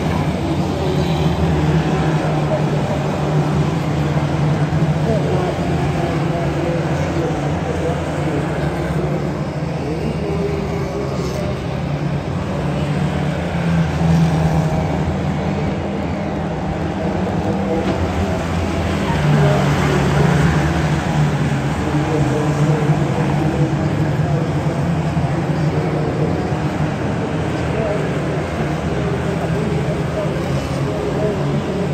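A pack of ministox, Mini-based stock cars, racing: several small engines running hard at once. The sound swells as cars pass close by, once about halfway through and again about two-thirds of the way in.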